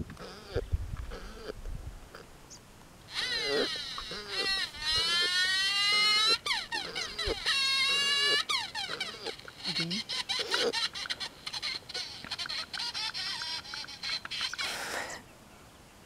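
High-pitched whining cries that slide up and down in pitch, with a few briefly held notes, starting about three seconds in and fading out near the end.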